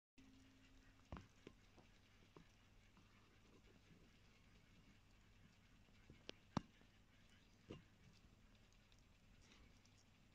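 Near silence: room tone with a few scattered short clicks and taps, the sharpest about two-thirds of the way through.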